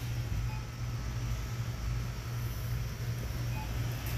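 Steady low hum of store background noise, with no distinct event standing out.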